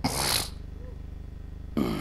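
A man's short breathy burst into a handheld microphone in the first half second, then the start of a spoken syllable near the end, over a steady low hum from the sound system.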